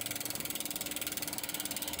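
Electric bike drivetrain turning: the chain runs over the small front chainring while the rear freewheel ticks rapidly and evenly.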